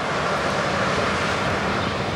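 Steady outdoor roar with a faint low hum underneath, unbroken and even in level.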